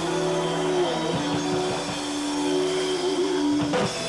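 Live blues-rock band: electric guitar holding long sustained notes over a run of drum hits, closing on a final hit near the end, as the song ends.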